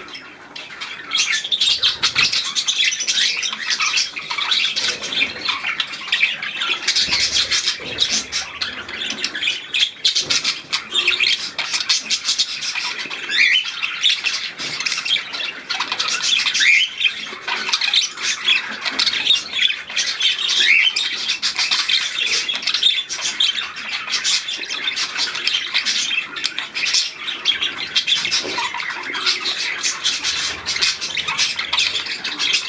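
Aviary birds, budgerigars and zebra finches, chattering with many short overlapping calls and chirps that never let up.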